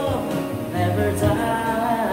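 A man singing into a handheld microphone, holding notes without clear words, over a recorded musical backing track with a steady bass line.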